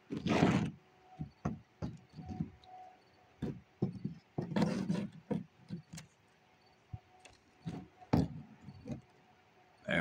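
Irregular knocks, rustles and scrapes of a phone camera being handled and propped in place close to its microphone, the loudest about half a second in.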